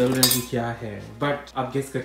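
Metal clinking and scraping of a small steel grinder jar knocked against a frying pan as ground cashew is emptied into it, sharpest in the first half second.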